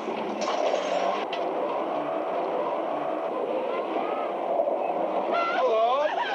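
A car driving on a dirt road, a steady rush of engine and tyre noise. Near the end, voices cry out over it.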